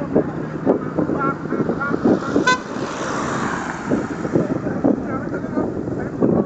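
A car horn toots once, briefly, about two and a half seconds in. Car road noise then swells and fades as the car passes by, with voices talking in the background.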